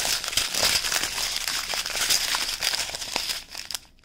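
Small resealable plastic bags of diamond-painting drills crinkling continuously as they are handled and leafed through, dying away near the end.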